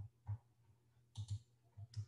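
About six faint computer-mouse clicks, short and separate, two of them in a quick pair a little after the first second, as the lecture slide is advanced.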